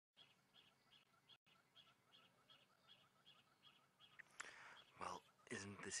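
Faint bird calling in an even series of short high chirps, about three a second, which stop about four seconds in.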